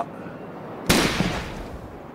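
A single rifle shot about a second in, a sharp crack followed by a tail that fades over about a second.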